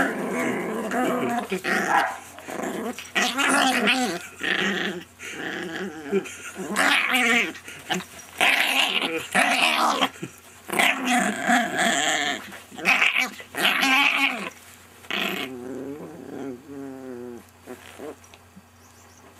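Small chihuahua play-growling in repeated bursts while mouthing and play-biting a person's hands, the growls quieter over the last few seconds.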